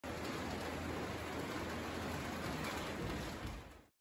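Steady rain, an even hiss, that fades out shortly before the end.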